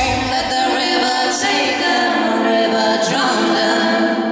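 Women's voices singing in harmony, with several parts moving together and settling into a held chord near the end.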